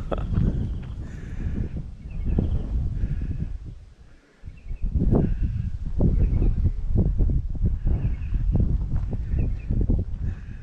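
Wind buffeting the microphone with a deep rumble and scattered knocks, easing briefly about four seconds in, with several faint, short animal calls heard through it.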